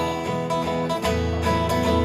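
Live acoustic guitar strummed in a steady rhythm, amplified through the PA.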